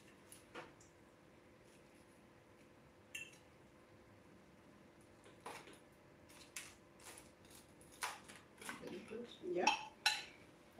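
Scattered light clinks and knocks of a plate, fork and metal tray as fried fish pieces are set down and the plate is scraped, one clink ringing briefly. Faint speech is heard near the end.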